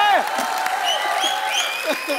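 Studio audience applauding, with a voice holding a drawn-out note over it.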